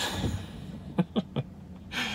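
A man's breathy exhale, then a short chuckle of three quick pitched puffs about a second in.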